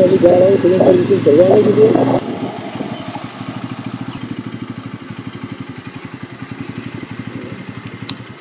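Bajaj Pulsar N160's single-cylinder engine running at low revs with an even, rapid putter as the bike rolls slowly. A man's voice talks over it for the first two seconds.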